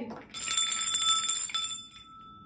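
Small brass hand bell being shaken, its clapper striking rapidly for about a second; it then rings on in a single tone that fades.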